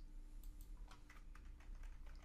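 Faint computer keyboard typing: a series of light, separate keystrokes.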